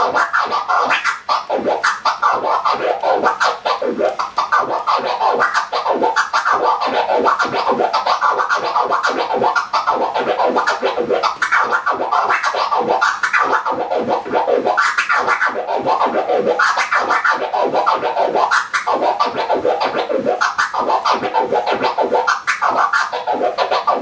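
Vinyl record scratched on a turntable with the one-click flare scratch: fast, unbroken back-and-forth strokes, each chopped by a crossfader click, giving a repeating "waku waku" sound. A regular accent recurs across the strokes, grouped in sixes (sextuplets).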